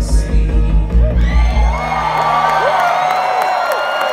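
A live synthwave band plays the last bars of a song over a heavy pulsing bass beat, which stops about a second and a half in. The audience then cheers and whoops.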